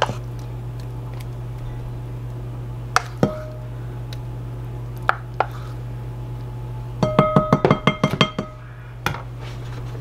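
A spoon clinks against a bowl while pudding is spooned out: a couple of taps about three seconds in, then a quick run of about a dozen ringing clinks near the end, over a steady low hum.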